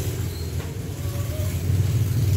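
A steady low rumble, like a vehicle engine running nearby.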